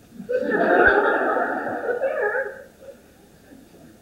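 Theatre audience laughing together in one burst of about two seconds that starts just after the beginning and fades out.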